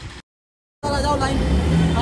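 A voice cut off by an edit, about half a second of dead silence, then a man's voice over a steady low rumble of street traffic.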